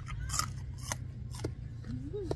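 Mouth chewing a pinch of raw-meat koi salad, with three sharp wet smacks about half a second apart.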